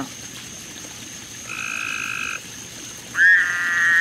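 Frog calling in two steady high-pitched calls: a short, quieter one about a second and a half in, then a louder, longer one starting about three seconds in.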